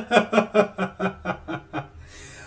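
A man chuckling: a run of short laughs, about four or five a second, trailing off toward the end.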